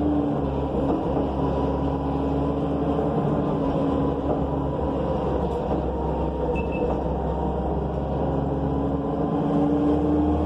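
Inside a New Flyer C40LF bus on the move: its Cummins Westport C Gas Plus natural-gas engine and Allison B400R transmission give a steady low drone under road noise. A pitched whine sags slightly in the first few seconds, holds steady, then climbs again near the end as the bus picks up speed.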